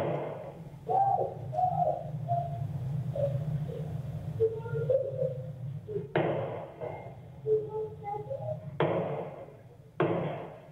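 Low-fidelity audio recording of a shooting, with a steady hum. Sharp gunshots come at the very start, about six seconds in, about nine seconds in and again at the end, and raised voices are heard between them.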